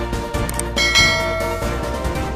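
Background music with a bright bell chime sound effect about a second in, ringing for about half a second: the notification-bell click of a subscribe animation.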